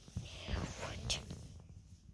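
A person whispering briefly, with a sharp hiss about a second in, over soft rustling and bumps of plush toys being handled.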